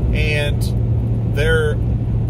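Steady low road and engine rumble inside the cabin of a moving vehicle, with a man's voice over it in two brief spurts.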